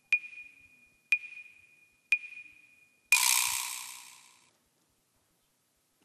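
Quiz-show answer timer: short beeps about one a second, three of them, then about three seconds in a longer harsh buzz that fades over about a second and a half. It signals that the time to answer ran out with no answer given.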